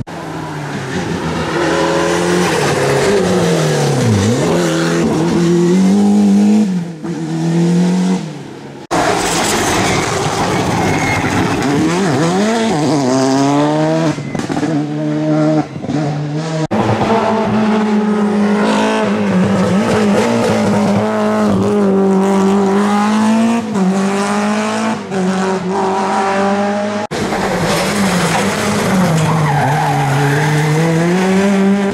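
Rally cars passing one after another through a bend on a tarmac stage. Each engine's revs drop as it brakes into the bend, then climb through the gears as it accelerates away.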